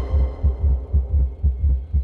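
A deep, throbbing bass pulse from a film trailer's soundtrack, repeating about three to four times a second with almost nothing higher in pitch above it.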